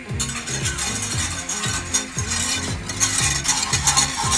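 Wire whisk stirring quickly in a small saucepan of orange juice and agar being heated toward the boil, a run of fast scraping and light clinks against the pot. Background music with a steady beat plays under it.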